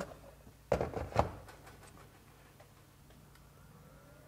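Plastic SKIL 40V battery pack sliding and clicking into place on its charger: two sharp clicks about half a second apart, a little after the start, then a few faint ticks. Near the end the charger's cooling fan kicks on with a faint rising whine, starting to cool the hot battery before charging.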